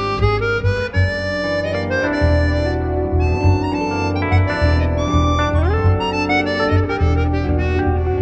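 Live jazz band: a chromatic harmonica plays a quick run of melody notes over archtop guitar and bass. A little past halfway through, one note slides upward in pitch.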